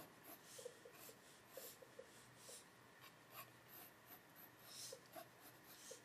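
Faint, short strokes of a mechanical pencil's lead scratching across paper as lines are sketched.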